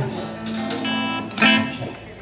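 Guitar chords strummed twice, about half a second and a second and a half in, each left ringing.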